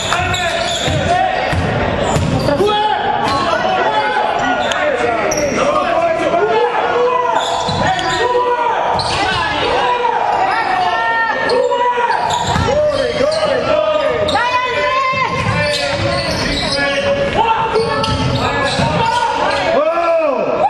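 Live basketball play on a hardwood gym floor: a basketball bouncing as it is dribbled, many short high squeaks of sneakers on the court, and players and spectators calling out.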